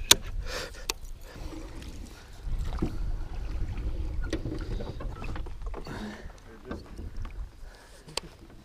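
Low rumble of water and wind around a small aluminium jon boat drifting on a river, strongest in the middle, with two sharp clicks near the start.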